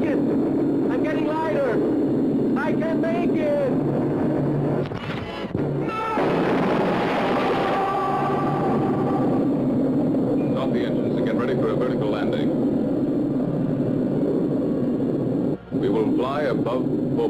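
Science-fiction film soundtrack: a steady low rumble under warbling electronic tones. A rushing noise swells up about six seconds in and fades over the next few seconds.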